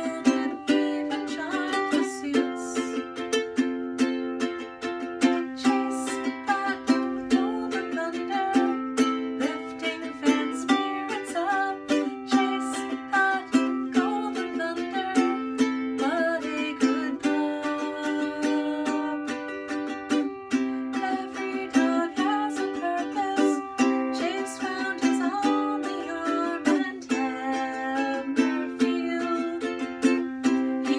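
Cigar-box ukulele strummed steadily in chords, with a woman singing the melody over it.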